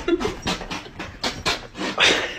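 A dog panting: quick, short breaths, about three or four a second.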